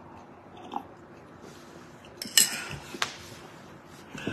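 A man drinking from a glass: small mouth and sip sounds with a louder sip or swallow a little after two seconds, then a sharp knock at about three seconds as the glass is set down.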